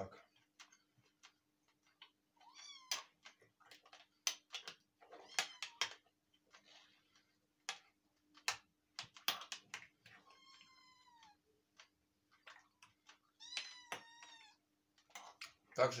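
A metal spoon clinking and scraping against a glass jar as pork chunks are stirred in marinade. A cat meows several times over it, with two long meows that rise and fall in pitch in the last third.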